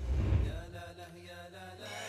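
TV channel break bumper music: a deep boom opens it, then a chant-like sung vocal line runs over a held low note.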